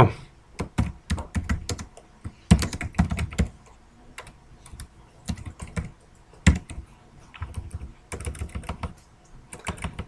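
Typing on a computer keyboard: irregular clusters of key clicks, with a single louder keystroke about six and a half seconds in and a quicker run of keystrokes near the end.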